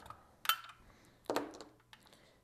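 Wooden dowel dummy cells with screw contacts being pressed into the AA slots of a Powerex MH-C9000 charger: two light clicks, about half a second in and again nearly a second later.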